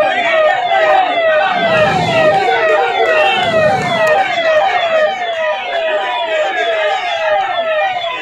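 Emergency vehicle siren sounding in a fast repeating pattern, each note falling in pitch, about two and a half a second, over a crowd's voices.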